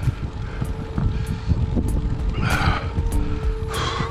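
Wind buffeting the microphone of a camera on a moving road bicycle, an uneven low rumble, with background music holding a steady note over it and a couple of brief higher rasps.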